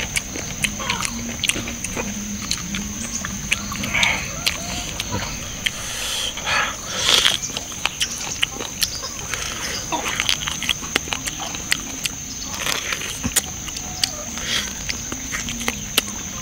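Close-up eating sounds of a man gnawing meat off a braised yak rib: chewing, lip smacks and many short wet clicks, with a louder sucking burst about seven seconds in.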